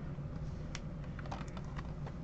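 Faint scattered light clicks and taps of fingers on a plastic Blu-ray case as it is turned over in the hands, over a low steady room hum.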